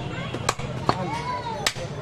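A heavy butcher's knife chopping goat meat on a wooden log chopping block: three sharp chops less than a second apart.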